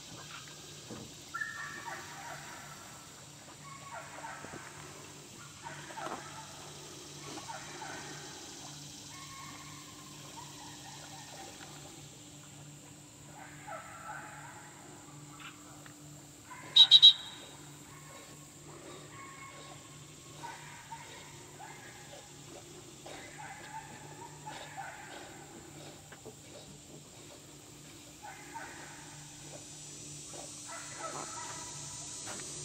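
Quiet outdoor background with a low steady hum and faint scattered short sounds. About 17 seconds in, a loud, sharp, high-pitched whistle sounds in three quick toots, typical of a handler's dog whistle.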